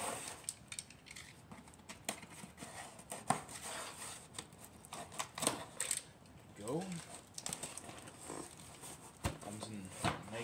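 Utility knife slitting the packing tape and cardboard of a long shipping box in a series of short scratching, clicking strokes, then the cardboard lid being pulled open, with a sharp knock a little after nine seconds.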